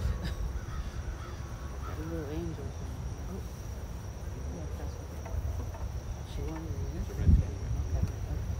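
Outdoor ambience of insects keeping up a steady high-pitched drone over low wind rumble, with a single low thump near the end.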